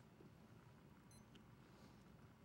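Near silence: faint room tone, with a very faint short high blip about a second in.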